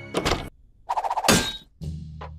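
Cartoon sound effects: a short clatter of knocks at the start, then a louder rattling thunk about a second in, with a brief knock near the end.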